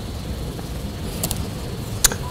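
Steady low rumble of room noise, with two quick clicks a little past the middle from laptop keys being pressed.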